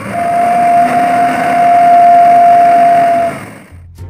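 A dump-truck sound effect: steady engine-like noise under one strong held tone that cuts off about three seconds in, after which the sound fades away.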